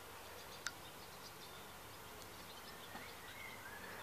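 Faint outdoor ambience with distant birds chirping now and then, and a single small click about two-thirds of a second in.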